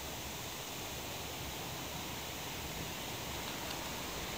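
Steady hiss with a faint low rumble from a ČD class 810 diesel railcar creeping away from the platform at walking pace on departure.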